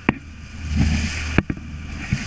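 Crushed ice shifting and clattering in a cooler as a tuna is dragged up through it by the tail, with sharp knocks right at the start and about a second and a half in, over a low steady hum.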